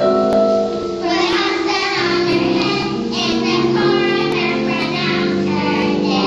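Children's choir singing together, many young voices holding sustained notes in a song.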